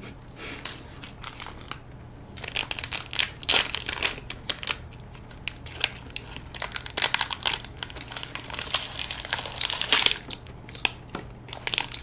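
Plastic film wrappers of individually packed French Pie pastries being peeled open and handled, crinkling and crackling in a quick irregular run that starts a couple of seconds in.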